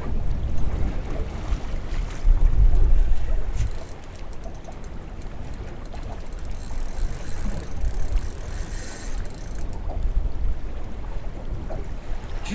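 Wind buffeting the microphone with a low, uneven rumble, loudest a couple of seconds in, over the wash of choppy water around a small open boat. A few faint clicks come through now and then.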